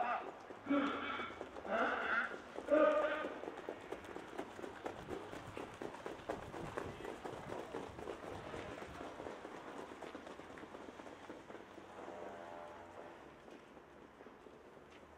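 Hoofbeats of trotting horses on the racetrack, a rapid, uneven patter of thuds that slowly fades as the horses move away. A man's voice talks over the first few seconds.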